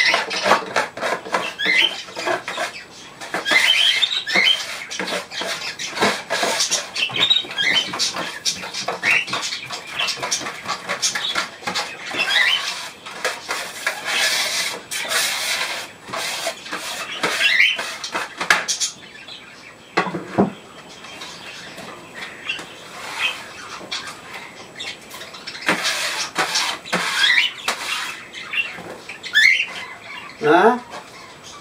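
Hand brush sweeping grit across a rough counter top in quick, repeated strokes, thinning out in the second half, while budgerigars chirp over it.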